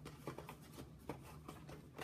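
Faint rustling and a few light clicks of packaging being handled as a small boxed figure is opened by hand, over a low steady hum.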